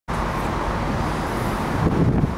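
Steady background noise of road traffic.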